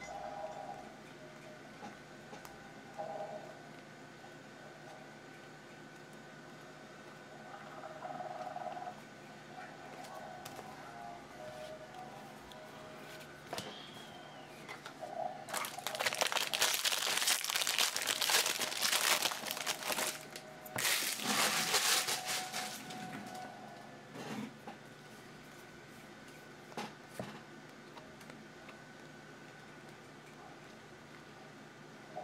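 Trading-card pack wrapper torn open and crinkled by hand in two loud bursts about halfway through, the second shorter. Before and after come soft clicks and slides of cards being shuffled in the hands.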